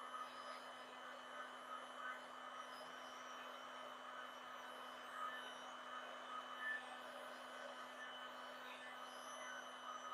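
Faint steady hum with a light hiss, unchanged throughout.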